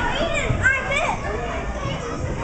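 Children playing: young children's voices shouting and squealing, with high-pitched rising and falling squeals in the first second.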